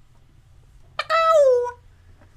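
A woman's Tourette's vocal tic mimicking a cat: one loud meow about a second in, lasting under a second and falling in pitch at its end.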